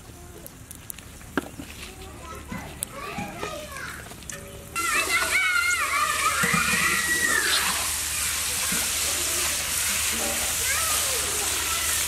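Hot oil in a large iron kadai starts sizzling loudly and suddenly about five seconds in, as a batch of coated chicken pieces is tipped in, and keeps frying with a steady hiss. Before that, only light clicks and handling sounds.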